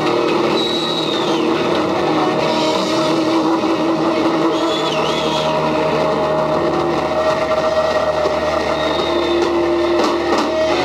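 Live heavy metal band playing a loud, dense wash of distorted electric guitars, bass and crashing drums, with long held notes and a few high squealing glides over the top, typical of a song's drawn-out ending.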